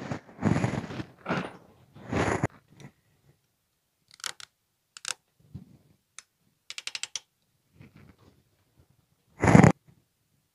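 Clamps being handled and set onto the steel roll bar tube: rustling and clunks in the first few seconds, then scattered sharp clicks and a quick run of about six clicks around seven seconds in as a clamp is tightened. A heavy thump comes near the end.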